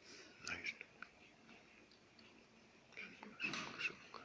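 Faint whispering in two short spells, one about half a second in and one near the end, with a few soft clicks among them.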